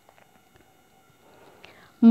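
Near silence: room tone with a few faint clicks, between stretches of speech.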